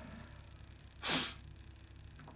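A man sneezing once into his hand: one short, sharp burst about a second in.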